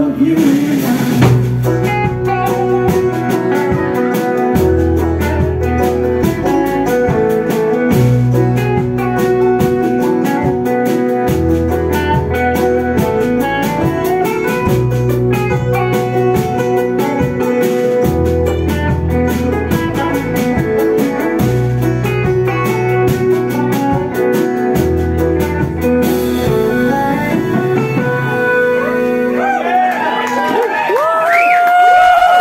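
Live band playing an instrumental passage with banjo picking over electric guitar, bass and a steady drum kit beat. About four seconds before the end the drumming drops out and the song winds down on held chords.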